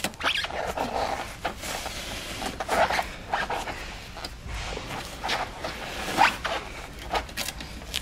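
Old seat-cushion foam being pulled and torn away from the metal seat pan it was glued to, a run of irregular short ripping and scraping strokes.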